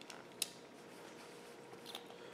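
Quiet room tone broken by one sharp, light click about half a second in and a fainter click near the end, small sounds of hands handling a folding knife and a plastic sharpening fixture.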